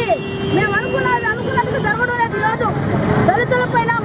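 A woman speaking forcefully in Telugu to news microphones, with road traffic running underneath.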